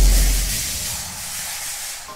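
Intro sound effect: the tail of a deep boom, a low rumble that dies out within about half a second under a hissing whoosh that fades steadily away.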